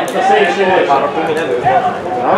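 People talking near the microphone, with no clear other sound standing out.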